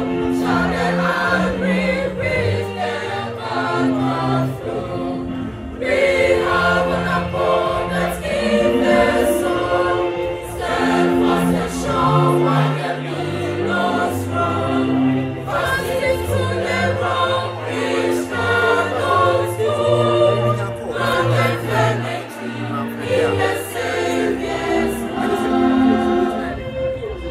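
A choir singing in harmony, several voice parts holding sustained notes together, with short breaks between phrases about six, fifteen and twenty-one seconds in.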